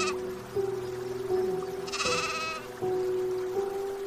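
A sheep bleats once, a wavering bleat of about half a second, about two seconds in, over background music with held notes.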